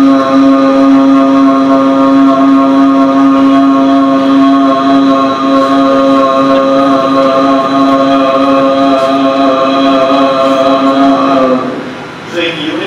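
A patient's voice holding one long, steady vowel at an unchanging pitch from a medialisation thyroplasty result recording, stopping about a second before the end.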